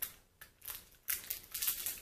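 Makeup brush packaging being handled: a run of short, scratchy rustles, one about half a second in and more from about a second on.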